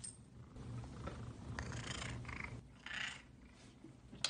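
A domestic cat purring, a low, even rumble through the first half or so, with two short hiss-like noises over it near the middle and about three seconds in.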